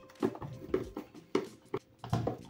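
A screwdriver driving screws into the plastic housing of a heating control module: a few short clicks and knocks about half a second apart.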